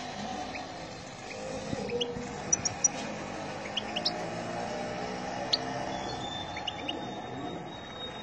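A caged European goldfinch giving scattered short, high chirps. Near the end a thin, steady high note is held for about two seconds.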